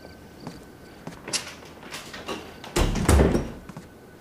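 Several short knocks and rustles, then a wooden apartment door being shut with a heavy thud about three seconds in.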